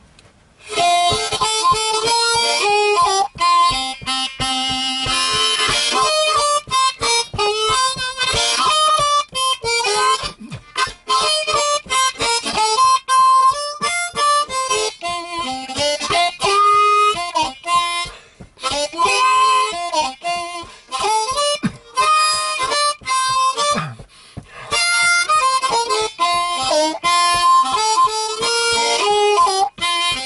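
Blues harmonica (harp) played with cupped hands: a busy run of short, rhythmically articulated notes and chords, broken by a couple of brief pauses between phrases.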